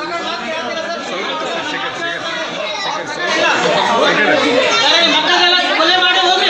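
Many voices talking over one another in a room, growing louder about three seconds in.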